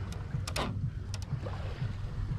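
Shallow sea water sloshing against an outrigger boat's hull with a steady low rumble, and a quick swish about half a second in followed by a couple of faint clicks.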